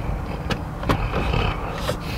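Steady low hum of a car heard inside its cabin, with a few short sharp clicks.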